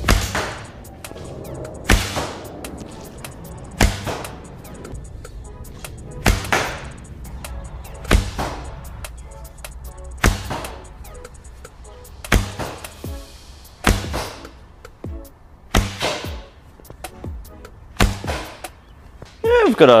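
A crude homemade wooden mollegabet bow shot about ten times in quick succession, roughly two seconds apart, each shot a sharp snap of the string with a thud, over background music.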